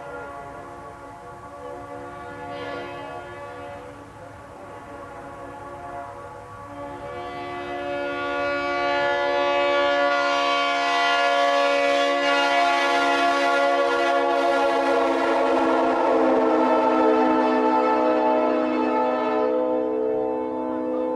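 Leslie RS3L three-chime locomotive horn sounding one long, held chord. It swells louder from about seven seconds in, and its pitch drops slightly about fifteen seconds in.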